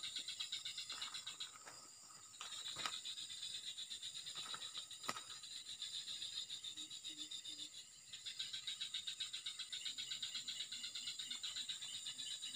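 Insects chirping in a fast, even, high-pitched pulse that carries on steadily, falling away briefly about two seconds in and again near eight seconds. Faint low calls repeat a few times in the last few seconds.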